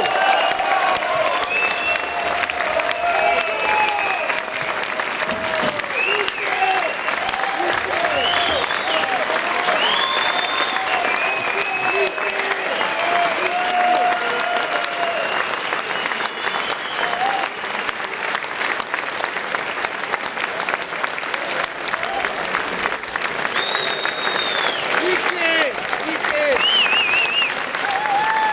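Concert audience clapping steadily, with voices calling out over the applause.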